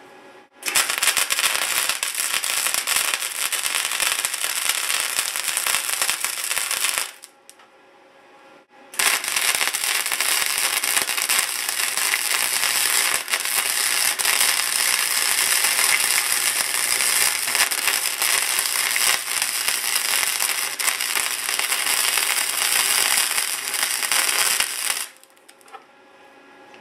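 Wire-feed arc welder laying weld beads on the cracked sheet-steel horn of a Thunderbolt 1003 siren, a steady loud crackle of the arc. One bead runs about six seconds, then after a short pause a second, longer bead runs about sixteen seconds.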